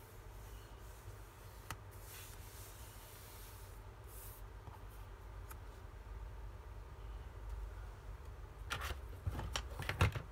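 Sheets of craft paper and small paper die-cuts being handled and slid on a cutting mat: soft rustles and a light tap, with a louder spell of rustling and clicking near the end.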